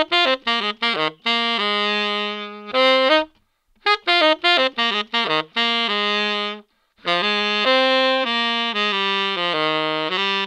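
Tenor saxophone playing unaccompanied, heard through a Kimafun KM-CX306-3 clip-on wireless microphone. It plays a quick run of short detached notes, then longer held notes, with two brief pauses in the phrase.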